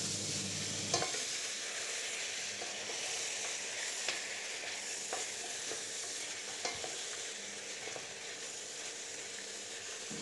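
Raw mutton pieces sizzling steadily in hot oil in a stainless steel pot while being sautéed and stirred with a wooden spatula, with a few light knocks of the spatula against the pot.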